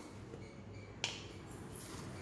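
A single sharp click about a second in, against faint room noise.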